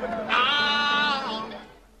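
A singer holds a final, slightly wavering note over piano music. About halfway through it fades out, and the sound drops to near silence at the end.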